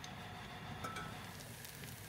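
Faint, steady sizzle of vegetables simmering in a covered pot on a gas stove, muffled by the lid.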